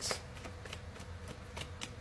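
A deck of tarot cards being shuffled by hand: a quick, irregular string of soft card flicks and slaps, the sharpest right at the start.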